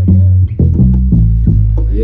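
Live band groove led by an electric bass guitar playing a low line of held notes that step from one pitch to the next, with sharp drum hits over it.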